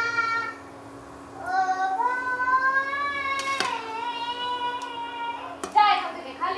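A child's high voice singing long, drawn-out notes that slide slightly in pitch, over a steady low electrical hum.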